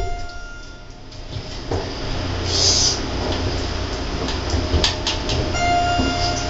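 Schindler elevator car travelling down between floors, with a steady low rumble of the ride. Near the end a steady electronic tone sounds as the car reaches the first floor.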